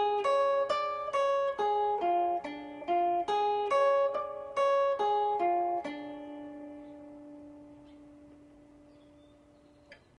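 Acoustic guitar playing a D diminished major seven arpeggio as single picked notes, about two or three a second, running down, back up and down again in pitch. The last note, about six seconds in, is left to ring and fades slowly away.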